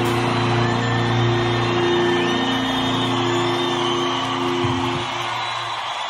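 Live rock band holding its closing chord over a cheering, whistling crowd. The chord stops about five seconds in, leaving the crowd cheering.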